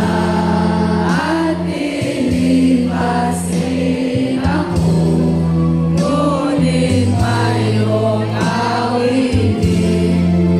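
A large group singing a song together in unison over backing music, with steady held bass notes underneath the voices.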